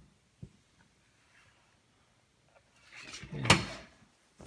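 Kayline vinyl soft-top door on a Jeep CJ5 being handled: a couple of faint clicks near the start, then rustling that builds to a sharp clack about three and a half seconds in, as the door and its latch are worked.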